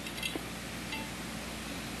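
A few faint clinks of cutlery against dinner plates, one with a short ringing note about a second in, over a steady background hiss.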